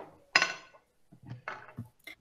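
A short, sharp knock of a small hard object with a brief ring about a third of a second in, followed by a few fainter knocks, picked up through a video-call microphone.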